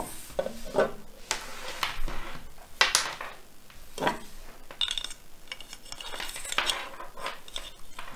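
Scattered light clicks and knocks of a 3D-printed plastic part and a USB cable being handled and set down on a wooden tabletop, with the sharpest taps about three and four seconds in.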